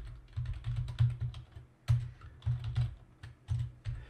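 Typing on a computer keyboard: quick runs of keystrokes separated by short pauses.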